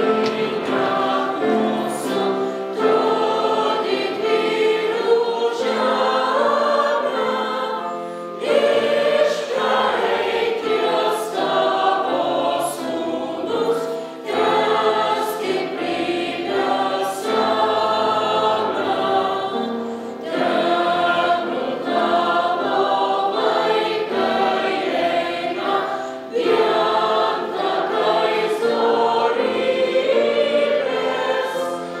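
Choir of children and adults singing together, in phrases of about six seconds with short breaks between them.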